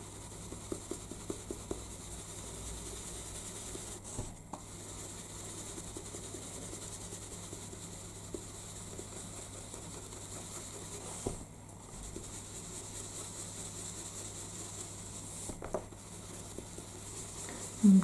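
Stencil brush loaded with graphite ink being rubbed over the edges of a card: a faint, soft scratchy rubbing of bristles on paper, with a few light ticks near the start.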